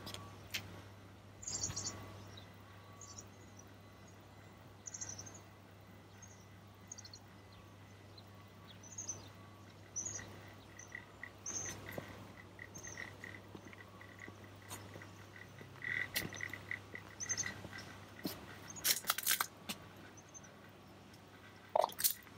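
Small birds chirping, short high notes scattered throughout, with a run of quick repeated notes in the middle stretch, over a faint low hum.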